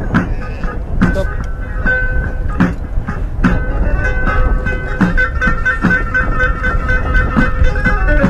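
Music with a steady beat, a little more than one stroke a second, over long held tones.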